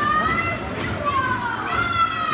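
Children shouting and cheering on racing swimmers, with long drawn-out high-pitched calls over a crowd hubbub, one near the start and a longer one toward the end.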